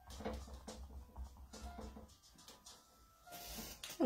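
A sea sponge being dabbed against a stretched canvas to lay on acrylic paint: a quick series of faint soft taps, a few a second, then a short rustle near the end.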